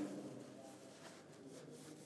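Faint rustling of slippery nylon parachute canopy fabric being handled and tucked, over the low room tone of a large reverberant hall.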